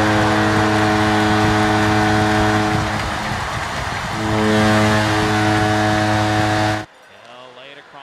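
Arena goal horn blowing over a cheering crowd: one long blast fading about three seconds in and a second starting about a second later. The sound cuts off suddenly near the end.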